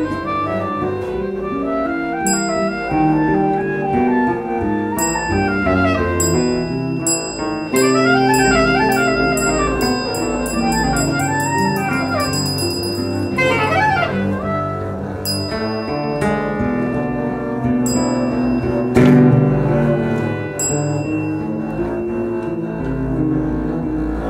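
Live acoustic ensemble music: a clarinet plays a quick, winding melody of rising and falling runs over acoustic guitar and double bass.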